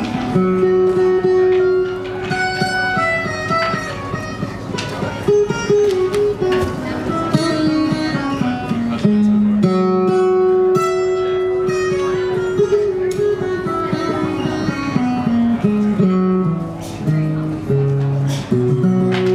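Solo acoustic guitar, picked, playing an instrumental passage. Melodic runs step down in pitch over held ringing notes.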